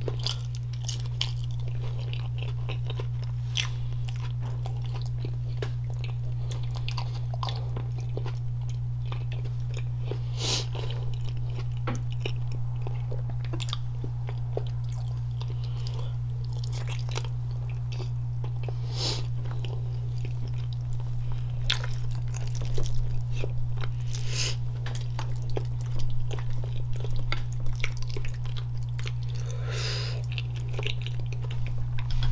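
Close-miked chewing and biting of a saucy seafood boil, with scattered crunches and sharp bite clicks, a few louder ones about 10, 19 and 24 seconds in. A steady low hum runs under it.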